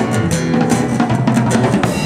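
Live rock band playing an instrumental passage: strummed steel-string acoustic guitar and electric bass under a Pearl drum kit keeping a steady beat on bass drum and snare.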